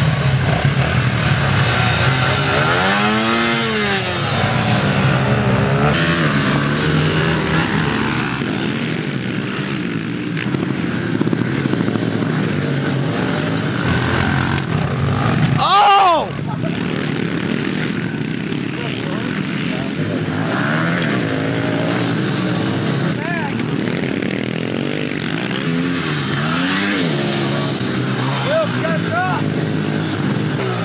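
Several small four-stroke pit bikes revving and racing past, their engine pitch rising and falling with each pass; the loudest and sharpest pass comes about sixteen seconds in.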